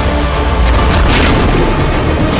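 Dramatic TV-serial background score with deep, heavy booms and a sharp hit about a second in.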